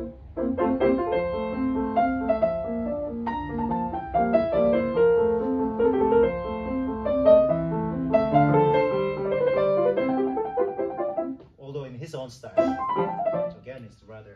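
Grand piano played, a classical passage of melody over chords that stops about eleven seconds in, followed by talking.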